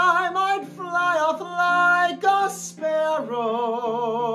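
A male musical-theatre voice singing long held notes with a wide vibrato, changing pitch between phrases, over a steady low accompaniment.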